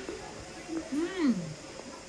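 A woman's closed-mouth "mmm" of enjoyment as she eats a waffle: one hum about a second in that rises and then falls in pitch.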